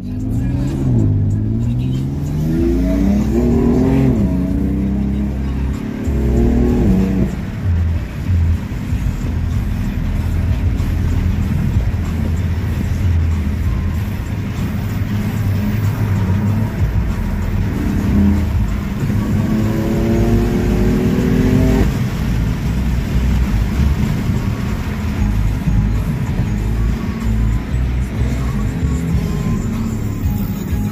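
Car engine accelerating hard, heard from inside the cabin over a heavy low rumble. Its pitch climbs for several seconds and drops off sharply at an upshift, once about seven seconds in and again about twenty-two seconds in.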